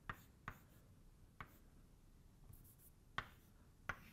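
Chalk writing on a blackboard, faint: a few short, sharp taps of the chalk against the board, about four in all, spread out with quiet between them.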